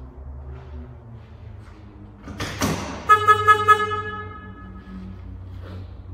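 A short whoosh, then a horn-like tone that pulses rapidly, about four or five times a second, and fades out over about two seconds, over a low steady hum.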